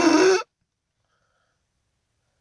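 A man's exaggerated, put-on laugh in imitation of a crazed llama, ending about half a second in; then complete silence.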